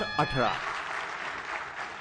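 An audience applauding in a hall, starting about half a second in as a man's announcement ends.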